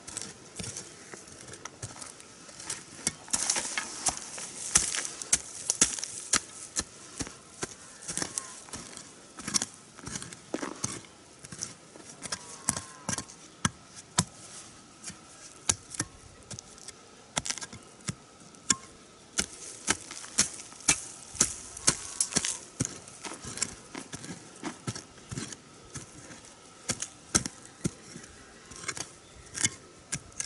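A short-handled hoe chopping and scraping into red soil, in irregular strikes about one to two a second, with insects buzzing faintly behind.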